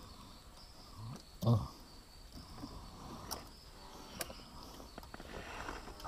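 Quiet riverside ambience with a faint steady high-pitched hum, a few light clicks as a live prawn is handled and hooked, and one short low grunt-like call about a second and a half in.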